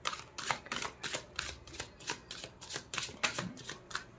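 A deck of tarot cards being shuffled by hand: a quick run of short card slaps and flicks, about three to four a second.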